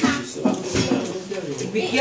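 Clinks of metal cutlery against dishes, a few short sharp knocks, under overlapping voices of several people talking in a small room.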